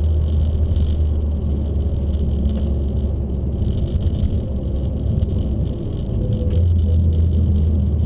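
Peugeot RCZ R's turbocharged 1.6-litre four-cylinder engine and road noise heard from inside the cabin, a steady low drone as the car is driven slowly at low load. The drone thins briefly about halfway through, then settles again.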